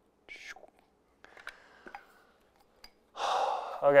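A man's breathing: a short sharp breath just after the start, a few faint ticks, then a long heavy sigh near the end.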